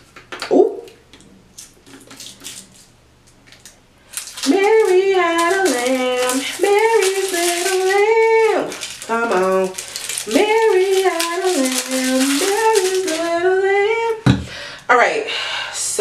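A woman singing a wordless tune in long, held, gliding notes, from about four seconds in until near the end. It follows a few seconds of soft clicking and rustling as a plastic pump bottle and its packaging are handled.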